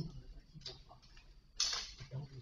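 Small clicks and rustling of items being handled on a shop counter, irregular and light, with a louder rustle about one and a half seconds in.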